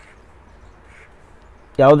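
Quiet room tone with the faint sound of a felt-tip highlighter stroking across paper; a man's voice starts near the end.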